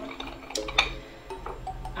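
Soft background music with steady held notes, over a few light clicks of a glass martini-glass rim against a ceramic dish as the glass is swirled upside down in simple syrup. The sharpest click comes just under a second in.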